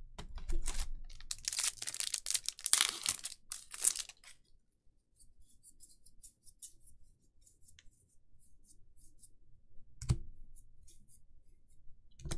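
Magic: The Gathering cards and booster-pack wrapping being handled: a dense rustling, scraping run for the first four seconds, then faint clicks of cards flicked through a stack. There is one soft knock about ten seconds in.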